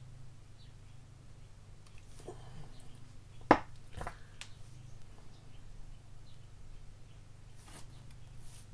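Small clicks and taps from hands handling a tiny brass photo-etched part and modelling tools on a cutting mat, with one sharp click about halfway through and a softer one just after, over a steady low hum.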